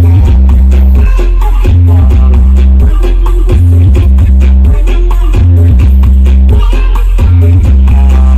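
Very loud electronic dance music played through large outdoor sound-system speaker stacks, dominated by heavy bass notes that change in steps.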